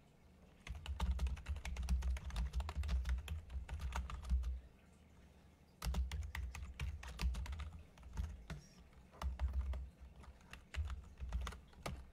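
Typing on a computer keyboard: rapid runs of key clicks, a long run of about four seconds followed by several shorter bursts with brief pauses between them.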